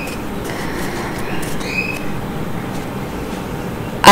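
Steady background noise, an even hiss, with two faint short high-pitched squeaks about two seconds apart.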